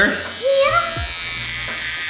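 Handheld electric shaver buzzing steadily as it is run over a man's beard stubble.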